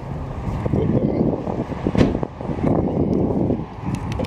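Wind buffeting the microphone and camera-handling rustle, with a single sharp click about two seconds in.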